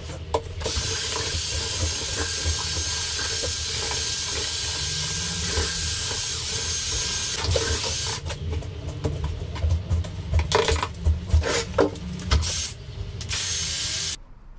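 A handheld power drill with a paddle mixer stirring Thistle hardwall plaster in a metal bucket: the motor whines steadily with the paddle churning the mix for about eight seconds, then runs in short on-off bursts before stopping at the end.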